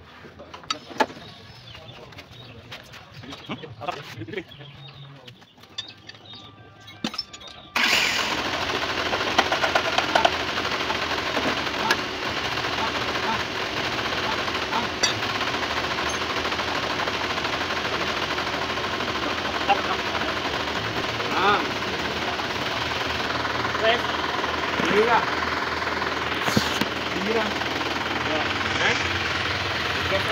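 Isuzu Panther diesel engine idling with a steady rough clatter, coming in suddenly about eight seconds in after a few faint tool clicks. The rough noise comes from worn timing gears, with the small idler gear badly eaten away.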